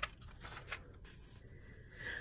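A quiet pause with faint room tone and a few soft clicks.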